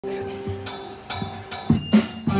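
Live band music through stage amplification: a held chord with a few sharp percussive hits, getting louder about a second and a half in.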